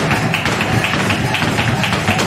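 Live flamenco in the alegrías form: a flamenco guitar playing under a quick run of sharp strikes from the dancer's footwork and hand-clapping palmas.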